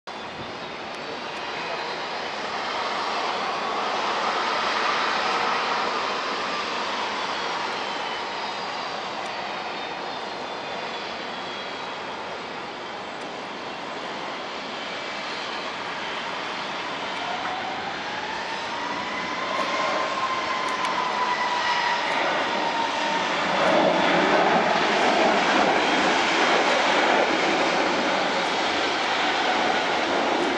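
Boeing 737-300's CFM56-3 turbofan engines at takeoff thrust: a steady jet noise with whining tones that glide up and then down, growing louder over the last few seconds as the airliner rolls and climbs out.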